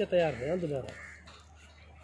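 A man's voice: one short, drawn-out call that wavers up and down in pitch and ends about a second in.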